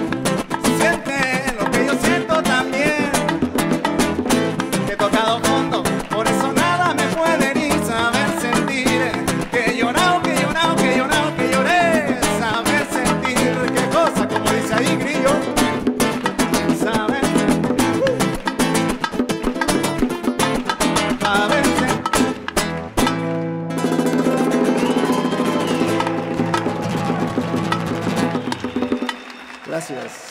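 Live acoustic guitar and bongos playing a lively Latin-style song. About 23 seconds in, the drumming stops and the song closes on a long held chord, which dies away about a second before the end.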